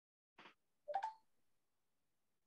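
Near silence, broken by a faint brief sound about half a second in and a short, slightly louder sound about a second in.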